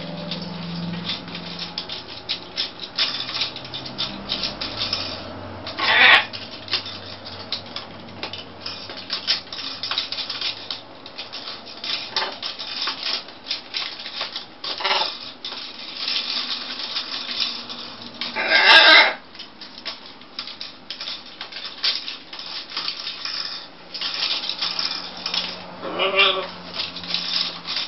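Two macaws, a blue-and-gold and a green-winged, working plastic bracelets on a PVC perch post with their beaks: a steady run of small clicks and scrapes of beak on plastic. Two brief loud calls break in, one about six seconds in and a longer one about three quarters of the way through.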